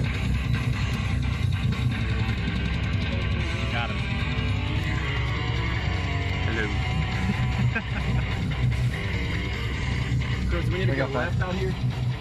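Guitar-driven rock music with vocals playing on a car stereo, heard inside the vehicle's cabin over a steady low rumble.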